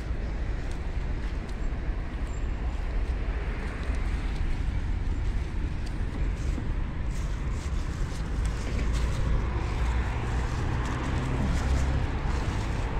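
Steady low outdoor rumble, with light rustling and handling noise as curly lettuce leaves are reached into and picked.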